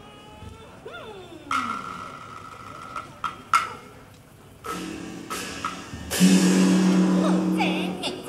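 Teochew opera performance: long held vocal and accompanying notes, broken by a few sharp percussion knocks like a wood block. The loudest held note comes near the end.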